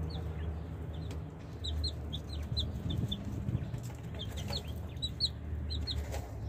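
Several baby chicks peeping in short, high, slightly falling chirps, in quick clusters as they peck at raisins held in a hand, over a steady low rumble.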